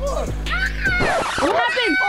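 Background music with children's high, excited voices gliding up and down over it, and a short rush of noise about a second in.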